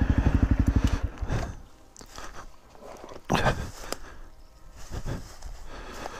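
A Honda dual-sport motorcycle engine idling with an even pulse, then switched off about a second in. Irregular crunching of dry fallen leaves underfoot follows as the rider gets off and steps around the bike.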